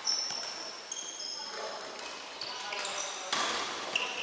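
Indoor futsal play on a wooden sports-hall floor: shoes squeak briefly and repeatedly on the boards while the ball is kicked and bounces, with a couple of sharper knocks, one near the start and a louder one near the end. Players' voices call out in the hall.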